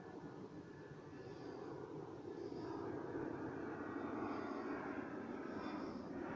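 Airplane engine noise in the sky: a steady drone that grows louder over the first three seconds, then holds.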